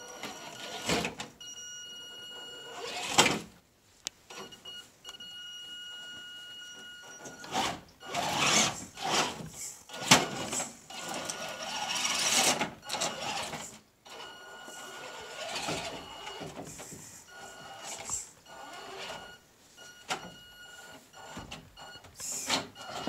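Axial SCX10 II RC rock crawler driving slowly over rocks: its small electric motor and geartrain give a steady high whine that comes and goes with the throttle, broken by irregular clattering and scrabbling bursts as the tyres and chassis work over the stones.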